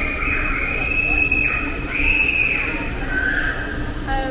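Children shrieking at play on a water splash pad: several long, high-pitched squeals one after another, over a steady low hum.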